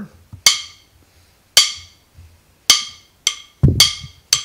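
Drum kit played at a very slow tempo: sharp stick strikes about a second apart, each ringing briefly, with quieter strokes and a deeper hit near the end, a groove being practised slowly.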